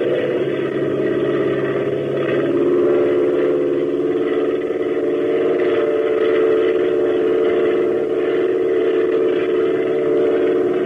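Radio-drama sound effect of a propeller airplane engine droning steadily, its tone shifting about two and a half seconds in, on an old 1940s transcription recording.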